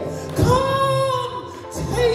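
A woman singing a worship song into a microphone, holding one long note from about half a second in that eases down in pitch near the end.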